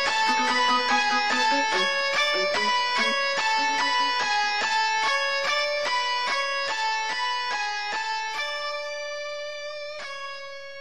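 Music: a clean electric guitar picking a quick run of single notes, ending near the end on one note left ringing and slowly fading.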